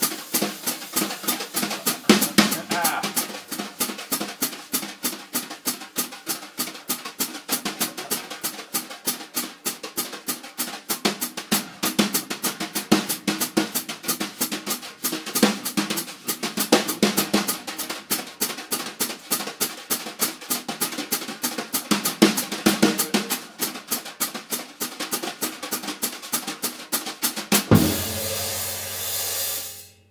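Jazz drum kit played with wire brushes: a fast swing groove on the snare drum with bass drum and hi-hat, a quick, even stream of strokes. Near the end the strokes give way to a sustained ringing wash that is cut off abruptly.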